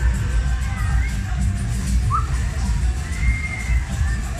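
Loud fairground ride music with heavy bass from a pendulum ride's sound system, with riders' screams rising over it a couple of times.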